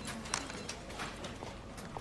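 Office room sound: light, irregular clicks and taps, two or three a second, over a low background hiss.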